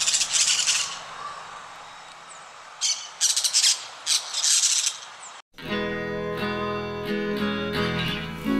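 Parakeet calls: three short bursts of high chattering chirps and squawks over a steady background hiss. About five and a half seconds in, this cuts off abruptly and acoustic guitar music takes over.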